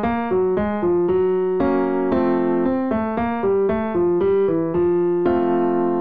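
Piano keyboard playing the guide notes for a downward intervallic bass lip-trill exercise: quick single notes stepping up and down, then a held note about five seconds in.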